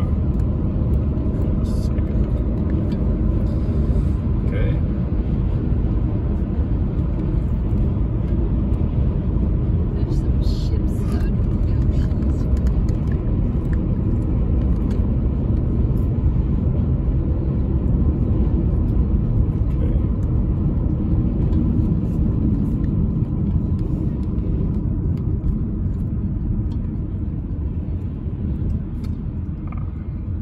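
Car running at motorway speed, heard from inside the cabin: a steady low rumble of road and engine noise, easing a little near the end.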